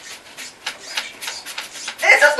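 Paintbrushes scrubbing acrylic paint onto stretched canvas, a dry rasping in a run of short, uneven strokes.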